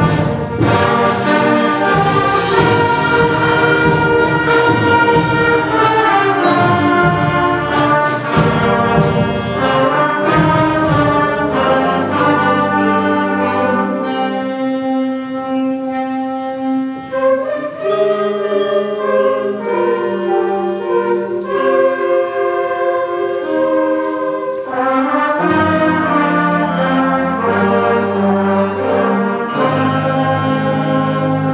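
Sixth-grade concert band of woodwinds, brass and percussion playing a piece. The full band plays with sharp strikes through the first ten seconds or so, thins to a softer passage of held notes in the middle, and comes back in full near the end.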